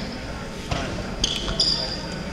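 Basketball bounced on a hardwood gym floor at the free-throw line, with a couple of sharp bounces about a second in. A few thin, high squeaks follow near the end.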